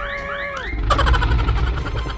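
Cartoon sound effects: a held cry that falls in pitch and stops less than a second in, then a rough roar with a deep rumble from a cartoon dinosaur.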